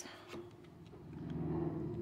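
Faint handling of tarot cards: a card drawn from the deck and laid on a cloth-covered table, with a few soft clicks in the first second.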